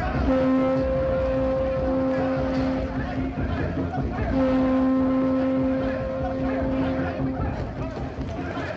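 A horn blown as an alarm: two long, steady blasts of about three seconds each, with a short break between them, over the commotion of a crowd.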